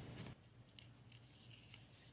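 Near silence with a low steady hum, broken by a few faint clicks and rustles of paper being handled.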